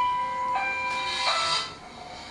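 A short chime-like electronic melody: a few sustained bell-like notes, changing once about half a second in, stopping with a brief hiss about one and a half seconds in.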